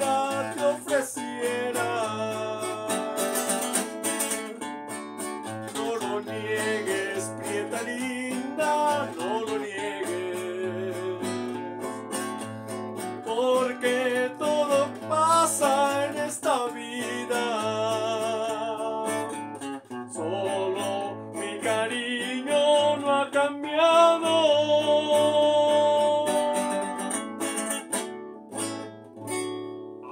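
A man singing a Mexican ranchera to his own strummed acoustic guitar, holding long notes with a wide vibrato.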